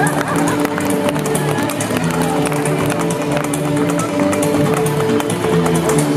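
Live string-band music: an upright bass and a fiddle playing held notes over a washboard that is scraped and tapped in a fast, clattering rhythm.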